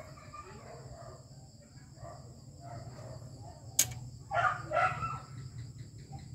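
A single sharp click about two-thirds of the way in as the DMD chip is freed from its unlocked socket on the projector's formatter board, over a low steady hum; just after the click come indistinct background vocal sounds.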